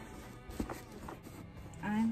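Soft background music with faint rustles and light clicks from hands handling a coated-canvas bag, and a woman's voice starting just before the end.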